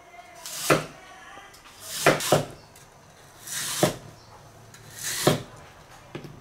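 Chinese cleaver slicing a peeled lotus root on a wooden cutting board: four slow cuts about a second and a half apart, each swelling as the blade goes through the root and ending in a knock of the blade on the board.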